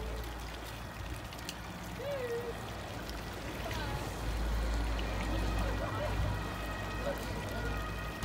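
Water pouring from a fountain spout into a stone basin, under the faint talk of a crowd standing around.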